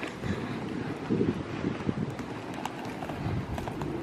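A wheeled suitcase rolling over tarmac and stone paving slabs, its small wheels rumbling and clacking irregularly at the joints, with footsteps.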